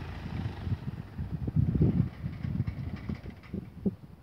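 Wind buffeting the microphone: irregular low rumbles that come in gusts, strongest about two seconds in and dying down near the end.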